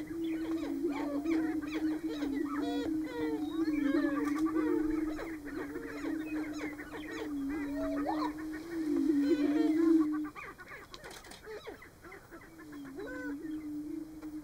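Greater prairie-chickens booming on a lek: a steady chorus of low hooting booms, with many short, higher calls over it. The booming breaks off about ten seconds in and starts again near the end.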